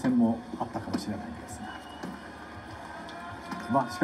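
A man speaking Japanese in television sports commentary, heard through a TV speaker, breaking off for about two seconds in the middle over faint arena background.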